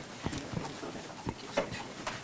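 A few scattered knocks and shuffling as people sit back down in their chairs, with footsteps on the floor.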